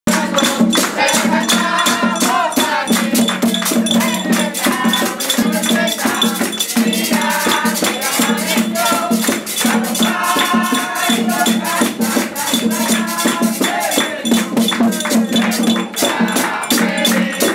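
Live merengue percussion: a rope-tensioned double-headed tambora drum and a metal güira scraped in a fast, steady rhythm, with hand-clapping and a group singing.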